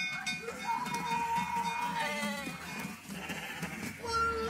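Sheep bleating in alarm, a long held bleat and then wavering ones, over a bell ringing out a warning of wolves, from an animated film soundtrack.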